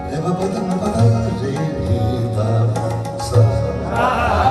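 Live ghazal accompaniment in an instrumental interlude: harmonium playing held notes over tabla strokes, with a plucked guitar line.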